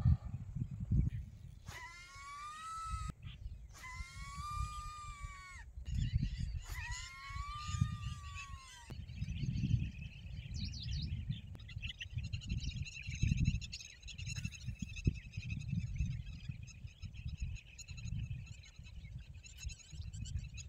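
Wind buffeting the microphone, with three whines in the first half, each about two seconds long, rising and then falling in pitch. From about halfway on, small birds chirp faintly.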